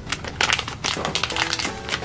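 Plastic blind bag crinkling and rustling as hands tear it open and pull the toy out, in a quick run of sharp crackles. Background music plays underneath.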